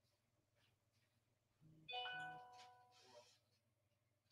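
Near silence, broken about one and a half seconds in by a short bell-like chime: two soft low notes, then a cluster of ringing tones that fade out over about a second.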